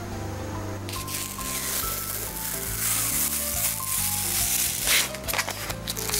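Background music with a steady beat. From about a second in comes a scratchy, rasping noise: a foam sanding sponge rubbing over cured expanding spray foam.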